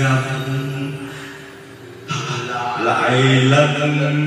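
Karaoke singing over a backing track: a long held note fades into a lull, then the voice and music come back in loudly about halfway through.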